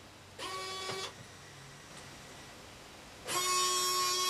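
Robot arm servo motors whining in two short runs as the arm moves: a brief one about half a second in and a longer, louder one near the end, each a steady pitched whine that starts and stops abruptly.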